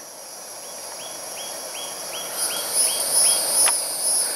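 Outdoor insects calling steadily, their high drone growing louder and pulsing in the second half. Over it a bird gives a quick run of about eight short high notes, and a single click comes near the end.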